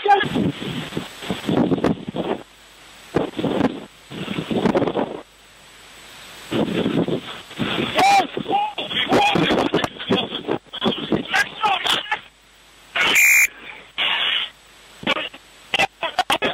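Indistinct voices and wind noise picked up by a rugby referee's body microphone, with a short, loud whistle blast about thirteen seconds in.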